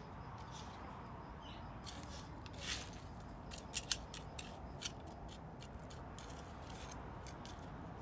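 Small hand trowel scraping and digging into loose garden soil: a series of short, gritty scrapes and crunches. The sharpest come about four seconds in.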